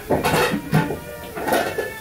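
Clatter and rustle of a meal being eaten: dishes and food wrappers handled in two rough bursts, with music coming in near the end.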